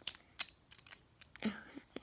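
Plastic Lego pieces clicking as they are handled and pushed together: one sharp click about half a second in, then a few lighter ticks.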